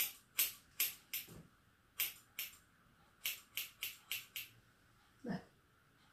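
Hair-cutting scissors snipping through hair as a fringe is trimmed: about eleven crisp snips in small runs over the first four and a half seconds. A single duller, lower sound comes near the end.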